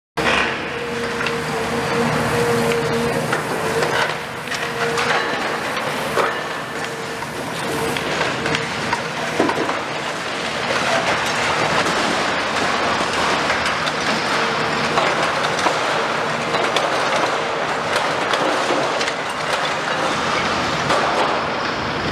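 Caterpillar 340F high-reach demolition excavator running under load as its demolition jaw tears and crushes steel roof structure, with scraping, clanking and crashes of falling metal debris. A steady whine runs through the first several seconds.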